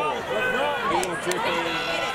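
Spectators in the stands shouting, many voices overlapping at once.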